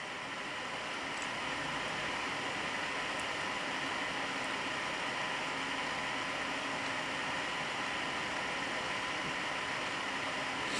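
Steady background hiss of room noise with a faint steady tone in it, unchanging throughout.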